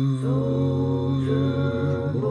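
A singing voice holding one long note, shifting slightly in pitch about a quarter second in and again near the end.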